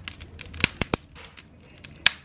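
Wood fire in a fireplace crackling, with sharp pops and snaps at irregular intervals.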